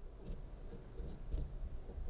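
A few faint, irregular clicks of computer controls over a low, steady room rumble.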